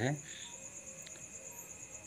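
A cricket chirring steadily in a fast, high-pitched trill, with faint room hiss.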